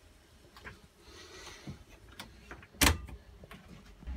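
Handling noise: a few light clicks and a soft rustle, then one sharp knock a little under three seconds in.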